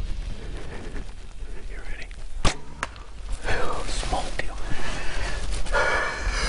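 Mathews Creed compound bow shot: a sharp crack about two and a half seconds in, with a second, fainter crack just after it. Voices follow.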